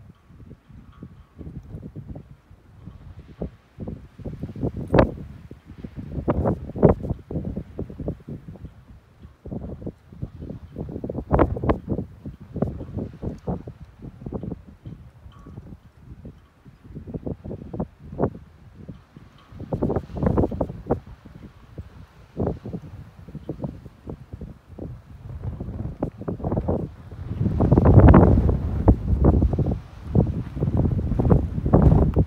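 Wind buffeting the microphone in irregular gusts, with the strongest, longest gust near the end.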